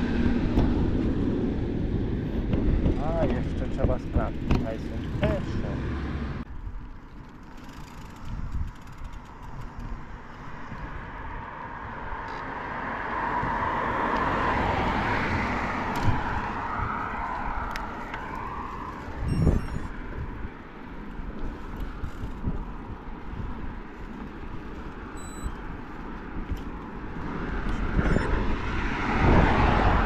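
Wind rushing over the microphone and tyre noise from a bicycle being ridden along a paved street. The rumble is heaviest for the first six seconds, then drops, with scattered light ticks and a single knock midway.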